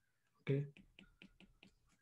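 A quick run of about seven light clicks: a stylus tapping on a tablet as a chemical formula is handwritten.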